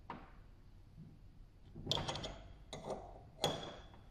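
Sharp metal clicks from a spanner turning the forcing screw of a timing chain splitting tool, pressing a pin out of a timing chain link: a few scattered clicks, a short cluster about halfway through, and the loudest click near the end.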